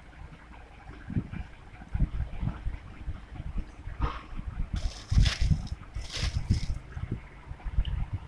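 Hands stretching and rubbing a wet, translucent film: soft handling noise with irregular low bumps, and a few brief rustles between about four and seven seconds in.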